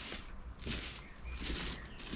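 Soft footsteps, about two steps, scuffing on bare earth, over a low rumble.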